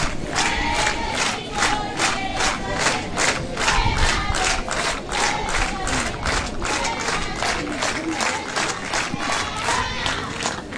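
Spectators clapping together in a steady rhythm, about three claps a second, with voices chanting along.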